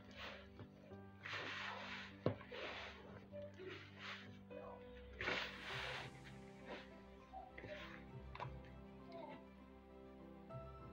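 Hands squeezing and pressing crumbly pastry dough in a plastic bowl, a soft rubbing, crumbling rush every second or so with a sharp tap a little after two seconds. Background music plays steadily underneath.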